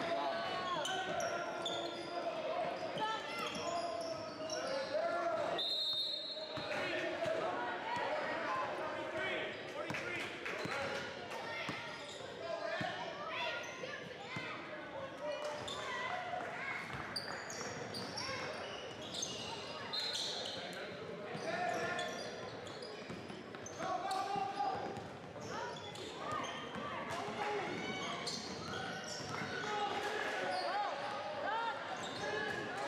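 Indoor basketball game: a ball bouncing on the hardwood gym floor amid constant overlapping, indistinct voices of players and spectators, echoing in a large gym. A short high-pitched tone sounds about six seconds in.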